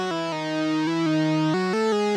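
Arturia CS-80 V4 software synthesizer playing a bright lead patch in mono legato mode: one rich, harmonic-laden voice moving through a connected melodic line whose notes change every fraction of a second. A short portamento lets each note run smoothly into the next.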